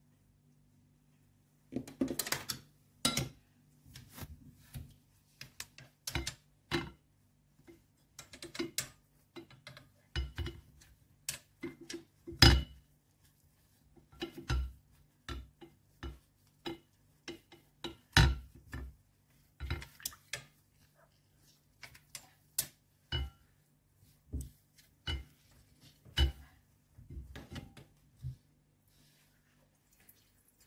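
Irregular knocks and clinks of a wooden stick and hands against a ceramic bowl as a cheesecloth bundle of curds is knotted around the stick, starting about two seconds in. A faint steady low hum runs underneath.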